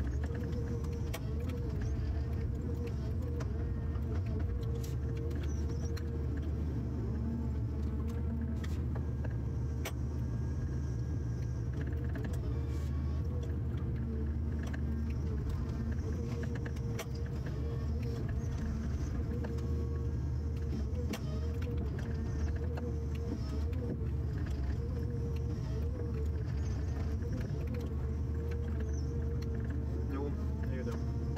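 Ponsse Scorpion harvester's diesel engine and hydraulics running steadily under load, a low rumble with a slightly wavering whine, while the crane and harvester head work the trees with scattered clicks and knocks.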